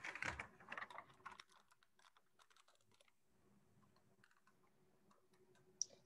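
Faint typing on a computer keyboard: a quick run of keystrokes in the first second and a half, then scattered clicks that thin out.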